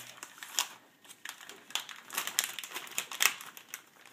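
Clear plastic packaging crinkling and rustling in irregular crackles as kit parts are handled.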